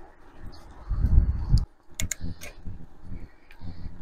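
Low wind rumble on the microphone of a moving bicycle, swelling strongly about a second in. A few short sharp clicks come halfway through.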